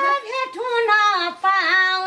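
A woman singing a Nepali rateuli folk song in a high voice, the melody gliding and wavering on held notes, with a brief break in the middle.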